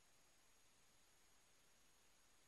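Near silence: faint steady hiss of the recording, with a thin high steady tone.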